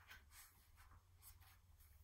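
Faint rustle of a hardcover picture book's paper pages being turned, a few soft, short swishes over near silence.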